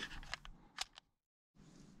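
Near silence: faint background with a few faint clicks in the first second, and a brief dropout to total silence where the video is cut.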